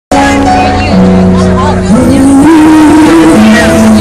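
Live band playing loudly, with held notes and a lead voice singing over them from about two seconds in.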